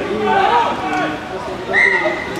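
Spectators' voices talking and calling over one another beside a rugby pitch, with a loud, steady high-pitched sound near the end.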